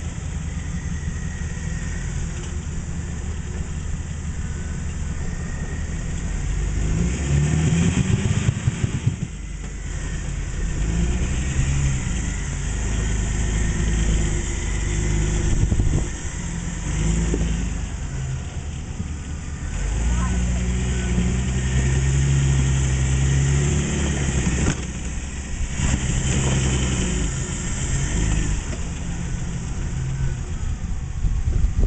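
Rock-crawler buggy's engine running at low revs while crawling over boulders, revved up in short surges several times as the rig climbs.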